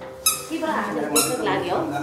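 Short high-pitched squeaks, roughly one a second, each lasting about a third of a second, over a faint electronic-sounding tune and mumbled voices.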